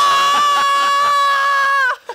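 A woman's long, high-pitched scream of excitement, held at one pitch for nearly two seconds and stopping abruptly near the end.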